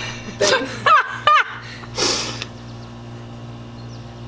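A woman laughing in a few short bursts, followed about two seconds in by a brief breathy hiss.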